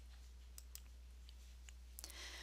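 Near silence with a few faint computer mouse clicks, irregularly spaced, over a low steady hum.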